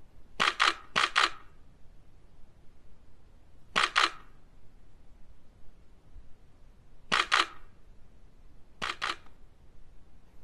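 Digital SLR camera shutter firing: three quick shots in the first second or so, then single shots about four, seven and nine seconds in, each a crisp double click.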